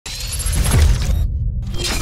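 Electronic audio-logo sting for a podcast intro: a harsh, noisy high layer over a deep bass. The high layer cuts out for a moment just past the middle, leaving only the bass, then swells back in.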